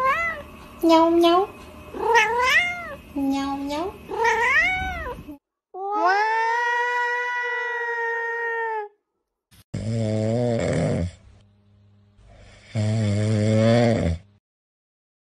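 A cat meowing about five times in the first five seconds, each call rising then falling in pitch, then a tabby cat holding one long, steady yowl for about three seconds. Near the end a dog makes two low, drawn-out sounds.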